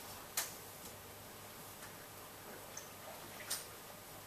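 Quiet room with a low steady hum and two sharp clicks, one just after the start and one about three and a half seconds in.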